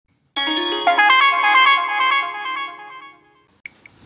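A short electronic chime jingle, like a ringtone: a quick run of bell-like notes that ring on together, then fade out about three seconds in.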